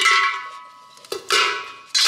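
Three ringing metallic clanks, each a sharp hit followed by a clear ringing tone that fades away.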